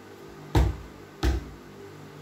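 Two short sharp knocks, a little under a second apart.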